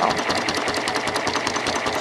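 Janome 6600 sewing machine running steadily with its needle and bobbin unthreaded, the needle striking in a rapid, even rhythm as fabric is moved under a free-motion quilting foot.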